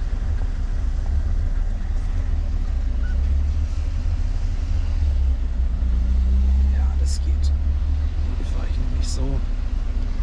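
Truck's diesel engine running with a steady low rumble, heard from inside the cab. The rumble swells a little about six seconds in, and a few short clicks come later.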